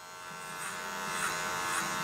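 Electric hair clippers buzzing steadily as they cut hair at the side of a man's head, growing louder over about the first second.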